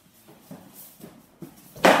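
Stick sparring with foam-padded sticks: a few faint knocks and shuffles, then one loud, sharp smack near the end as a padded stick lands on the opponent.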